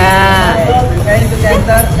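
A person laughing, one drawn-out pitched laugh at the start, followed by brief chatter over a steady low rumble.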